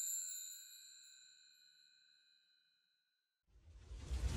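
A high, bell-like chime from a logo sting sound effect, ringing out and fading away over about two seconds. Near the end a low, rumbling whoosh effect begins.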